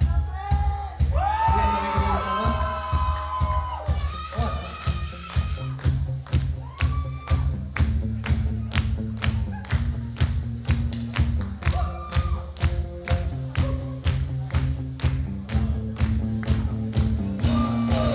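A rock band playing live: a steady drum beat of about two hits a second under a bass guitar line and electric guitars.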